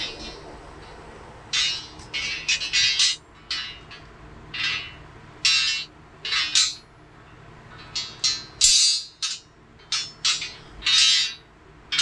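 New steel coil springs for a Jeep Wrangler TJ clinking and ringing against each other as they are handled, in short irregular bursts. The springs are being held up to check their size against the old ones.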